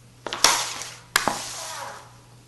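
Hockey stick blade knocking and scraping against a puck and the smooth floor as the toe works in behind the puck to lift it. Sharp clacks come about a quarter second in, with the loudest just under half a second in, then another pair a little after a second, each trailing off into a scraping hiss.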